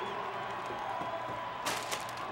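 Faint crowd noise from a televised sports broadcast, with a short crinkly rustle of a chip bag near the end.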